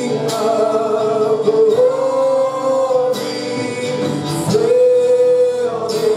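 Live praise and worship music: voices singing a slow worship song, with long held notes.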